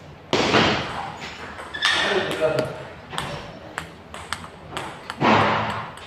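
A table tennis rally: the celluloid ball ticks sharply and irregularly off the bats and the table. Three loud voice exclamations break in, near the start, around two seconds in and about five seconds in.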